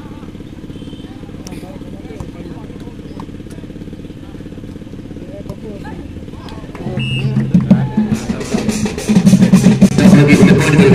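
A steady low hum with a background murmur. About seven seconds in, a loud amplified voice comes in over a loudspeaker, with sharp clicks in the last couple of seconds.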